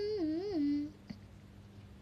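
A young woman humming a short phrase with closed lips, about a second long, the pitch wavering and then falling.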